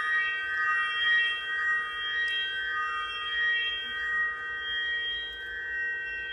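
Sciola sound stone rubbed by hand, giving a sustained ringing of several high tones together that swell and fade in slow waves about every half second.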